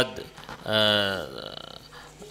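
A man's voice making one drawn-out vocal sound, falling in pitch and about half a second long, in a pause between phrases of speech.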